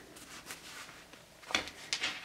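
Faint rustling of cloth as a bamboo insert is pushed into the pocket of a cloth diaper, with a brief soft bump about one and a half seconds in as the diaper is handled.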